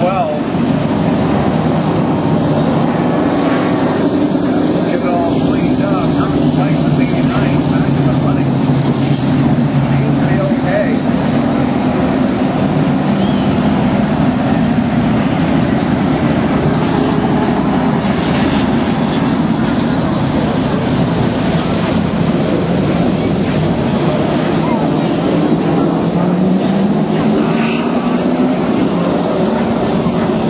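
Outlaw super late model stock cars' V8 engines running at racing speed around a short oval, their pitch rising and falling as the cars come by, with voices from the crowd underneath.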